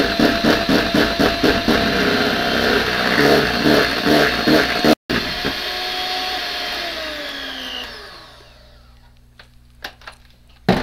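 Electric hand mixer whipping a thick mixture in a stainless steel bowl, its motor running loud with a rapid, regular pulse as the beaters churn. After a brief dropout about halfway it runs smoother, then its pitch falls and the motor winds down to a stop.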